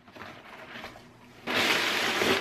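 Brown kraft packing paper rustling and crinkling as it is pulled out of a cardboard shipping box, faint at first and much louder from about one and a half seconds in.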